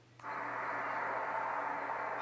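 A steady hiss that comes in suddenly a moment after near silence and holds even, with a faint steady hum under it.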